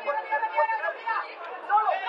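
People's voices talking, a quieter stretch of chatter with no clear words.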